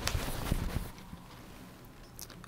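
Cotton poplin fabric being handled and rustled, with a few soft knocks in the first second, then settling to quiet room tone.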